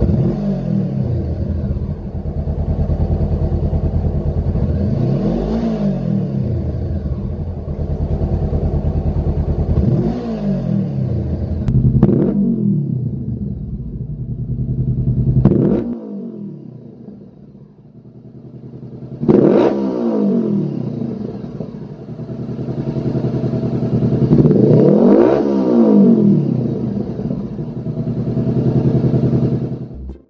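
Honda CBR500R parallel-twin engine idling and blipped repeatedly through the stock silencer, the revs rising and falling about five times. About 16 s in the sound cuts to the same engine breathing through a Lextek GP1 full exhaust system, idling and revved twice more.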